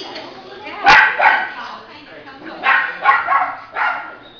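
A puppy barking in play: about five short, sharp barks, two close together near one second in and three more in the second half, over people talking in the background.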